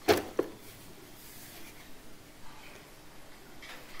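A plastic mains plug pushed into a power-strip socket: a sharp click right at the start and a smaller one just under half a second later, then faint room hiss.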